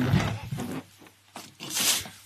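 Helium rushing out of a latex balloon's neck as it is breathed in: a short sharp hiss near the end, after a brief rubbing of the balloon.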